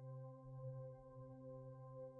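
Faint background music: a soft synth chord held steady without change.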